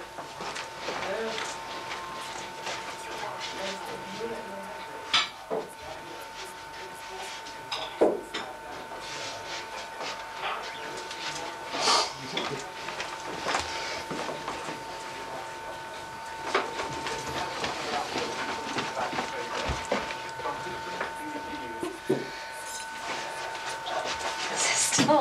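A steady high-pitched hum runs under indoor room sound: scattered knocks and clicks from handling and movement, with faint voices in the background.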